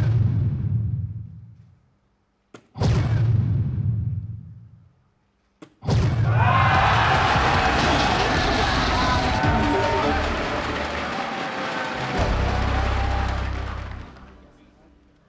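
Electronic soft-tip dartboard sound effects: a dart strikes with a sharp click and the board answers with a booming bull effect that dies away over about two seconds, twice a few seconds apart. A third click sets off the longer hat-trick award effect, music and sound effects lasting about six seconds and ending in a low rumble, marking three bulls in one turn.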